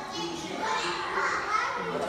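Children's voices chattering and calling out, several at once.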